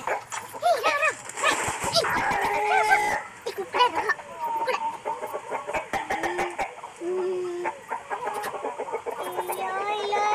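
Chickens clucking in a run of short calls, with a person's voice mixed in.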